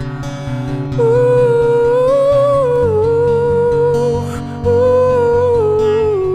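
A man's wordless sung or hummed vocal line over acoustic guitar. The voice comes in about a second in, rises and falls, breaks off briefly past the middle and then resumes.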